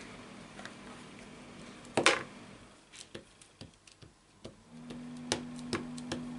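Light clicking taps of an ink pad dabbed onto a clear acrylic stamp block to ink a rubber stamp. One sharper click comes about two seconds in, and the taps grow more regular near the end, over a low steady hum.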